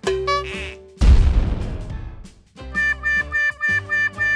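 Cartoon sound effects in a children's toy animation. A short whistling tone is followed about a second in by a loud impact that dies away over a second or so. Then playful children's music with short, repeated brass-like notes begins.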